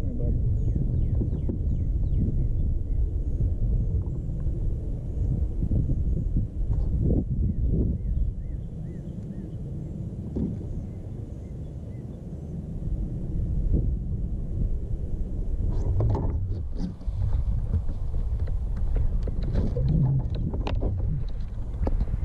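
Wind buffeting the camera microphone: a steady low rumble that eases for a few seconds in the middle, with a few handling knocks near the end.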